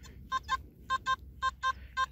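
Nokta Makro Simplex metal detector giving short beeps, mostly in pairs, about four a second, as the coil is swung back and forth over a target. The signal jumps about, which could be a bottle cap, pull tab, foil or can slaw.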